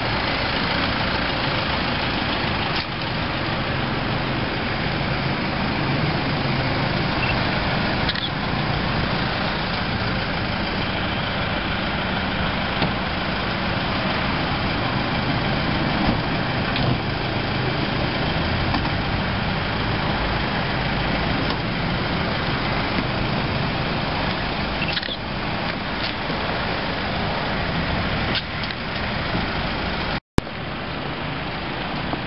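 Vehicle engines running steadily at low speed and idle: a police pickup and a passenger van idling close by.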